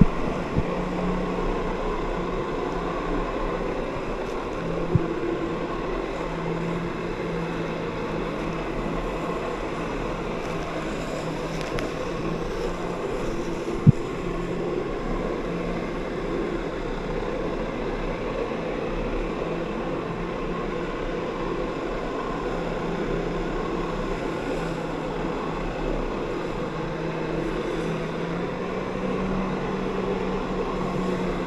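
Personal watercraft engine and jet pump running under load to power a flyboard, a steady drone with a low hum that shifts slightly in pitch, over churning, spraying water. Two brief knocks, about five seconds in and near the middle.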